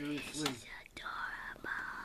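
A person's short voiced murmur, then a breathy whisper held for about a second, close to the microphone.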